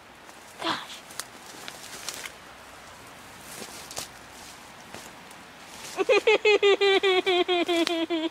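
Faint footsteps and brushing through undergrowth. About six seconds in, a person starts a loud, long wail broken into quick even pulses, a frightened cry while scrambling down a steep slope.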